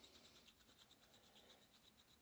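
Very faint, quick scratching of a nylon brush scrubbing a Heritage Barkeep revolver's steel cylinder wet with CLP, working burnt powder residue off. The strokes come several a second and thin out in the second half.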